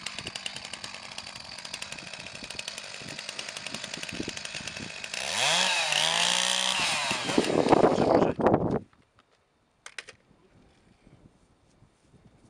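A chainsaw running, then much louder at high revs from about five seconds in, its pitch dipping and climbing back, before it cuts off suddenly near nine seconds. A few faint clicks follow.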